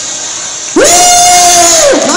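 A woman's voice calling out one long, high held note through a PA microphone. It starts about three-quarters of a second in, swoops up into the note, holds it for about a second, and drops off at the end.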